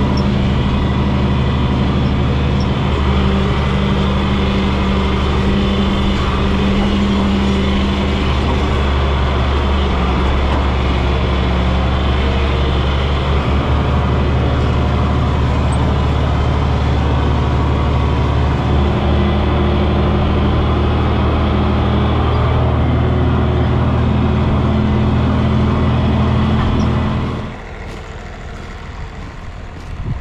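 John Deere 4020 tractor's six-cylinder engine running steadily under load, heard from inside the cab while it tows a chain harrow over the field. The engine sound drops away sharply near the end.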